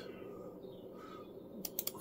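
Low room noise, then a quick run of four or five sharp computer mouse clicks near the end as the display's scale is stepped.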